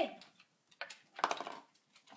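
Balls of a stair-climbing marble toy clicking and clattering against its steps, a short run of ticks about a second in.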